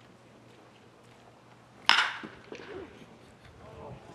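A metal baseball bat hitting a pitched ball once, a sharp ringing ping about two seconds in, followed by faint voices.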